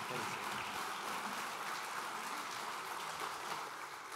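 Audience applauding steadily, with a few voices faintly heard through it.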